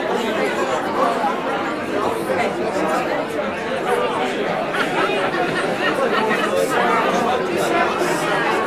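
Indistinct crowd chatter: many voices talking at once in a steady babble, with no single voice standing out.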